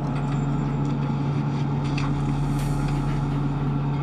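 Steady low machinery drone with an even hiss over it, holding one pitch throughout: the International Space Station's cabin fans and equipment running.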